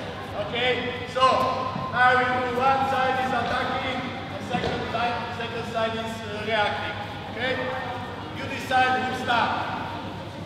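Several people talking at once in a large hall, with a few sharp knocks.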